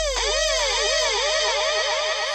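Dubstep breakdown with the drums dropped out: a synth tone swoops up and down in quick repeated arcs, about five a second, like a siren, over a held low bass note.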